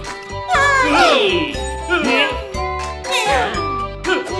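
Wordless cartoon character voices, high squeaky gliding exclamations and chuckles, over light children's background music with chiming notes.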